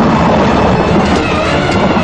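Fast-moving train running over the rails, a loud steady rumble with wheels clattering on the track.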